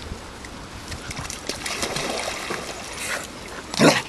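Dogs splashing as they wade and swim in shallow pond water, with one loud, short sound just before the end, most likely a single dog bark.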